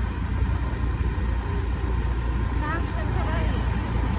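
A motor two-wheeler being ridden, heard from the rider's hand-held phone: a steady low rumble of engine and wind on the microphone.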